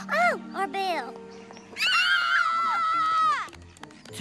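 Cartoon character voices over background music: two short arching cries in the first second, then one long, high, wavering cry lasting about a second and a half.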